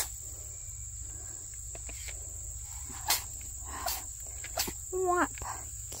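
Insects outdoors keep up a steady, high-pitched chorus, with two sharp clicks about three and four and a half seconds in.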